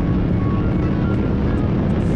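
Supercharged Saleen Mustang GT V8 running at speed on a race track, with background music over it.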